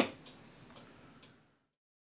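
A short sharp click, then a few faint ticks about twice a second over low room noise. The sound cuts off to dead silence about one and a half seconds in.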